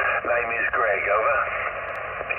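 A voice coming in over the air on the 20-metre band through an Icom IC-706MKIIG transceiver, thin and narrow in tone like a shortwave voice signal. There is a short click near the end.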